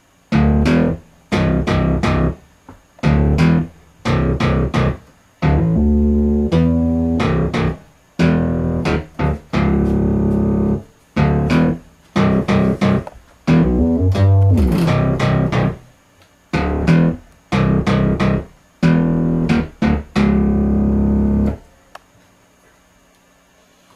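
Synthesised bass and plucked-guitar-like sound played on a MIDI keyboard in short stop-start phrases, each a second or two long with brief silent gaps between, as a riff is tried out. A pitch bend slides the notes about two-thirds of the way through.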